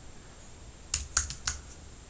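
Computer keyboard typing: a quick run of about five keystrokes about a second in.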